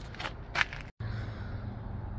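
Low steady outdoor background noise with a couple of faint clicks, broken by a short dropout to silence about a second in where the recording is cut.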